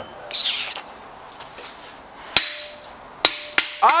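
Metal tools and parts handled on a metal workbench: a short scrape near the start, then sharp metallic knocks, one about two and a half seconds in and two close together near the end, the last ones ringing briefly.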